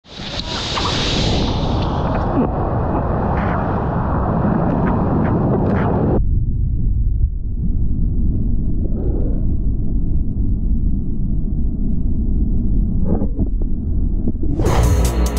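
Rushing water of a breaking wave-pool wave, picked up by an action camera at water level. About six seconds in, the sound cuts suddenly to a deeper, muffled rumble of water and wind on the camera as it rides inside the barrel.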